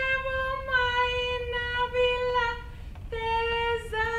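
A woman's solo voice singing long, wordless held notes, each sliding slightly downward. The note fades about two and a half seconds in and resumes a little lower just after three seconds.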